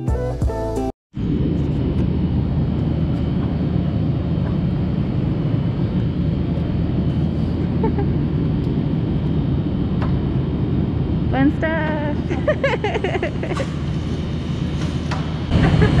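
Guitar music for about the first second, cut off abruptly. Then a steady low rumble of background noise, with brief voices about three quarters of the way in and again near the end.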